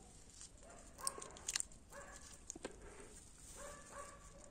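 A green grapevine shoot snapped off by hand at the base of its bud, heard as a few faint soft clicks, while an animal gives several faint short whining calls in the background.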